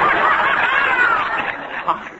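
Studio audience laughing at a punchline. The laughter comes in at full strength at once and eases off near the end.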